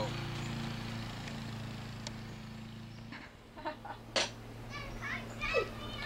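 Young children's voices chattering and calling out in the second half, after about three seconds of low steady hum; a single sharp click about four seconds in.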